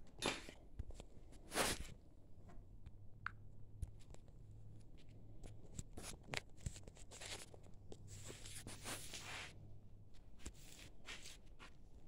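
Handling noise from a phone camera being picked up and moved: faint rustles and scattered light clicks and knocks, the biggest rustles in the first two seconds, with a faint low hum through the middle.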